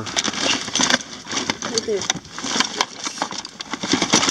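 Hands rummaging through a plastic bin of tangled cables, extension cords and small electronics: a busy run of clicks, clacks and rattles as plugs and wires knock together and shift.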